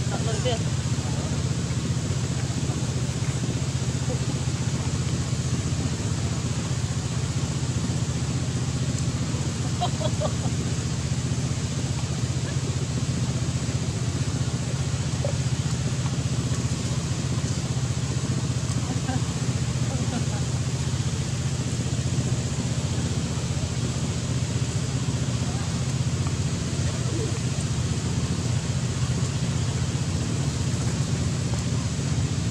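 A steady low mechanical hum over an even hiss, unchanging throughout, like a running engine heard nearby.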